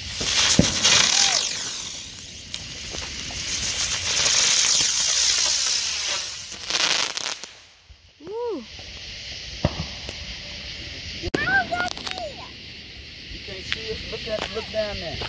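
Ground firework going off: a dense, loud hissing and crackling spray of sparks that lasts about seven and a half seconds and then cuts off. A few sharp pops follow later.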